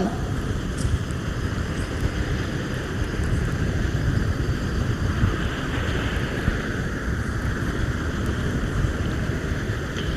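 Wind on an outdoor handheld microphone: a steady low rumble with a faint hiss above it.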